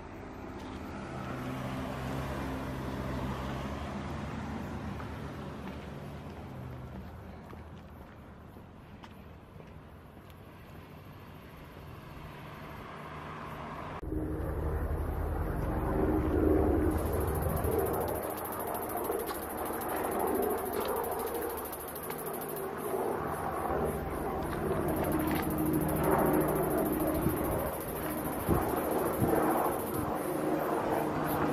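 Outdoor ambience with a vehicle engine hum that swells over the first few seconds and fades away. It changes suddenly partway through to a louder rumbling outdoor noise with a steady high-pitched buzz.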